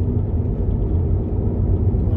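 Car driving along an asphalt road, heard from inside the cabin as a steady low rumble of engine and road noise.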